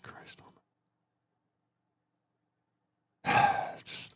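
A man's heavy sigh: one long breathy exhale about three seconds in, following a muttered word and a stretch of silence. It is a sigh of exasperation.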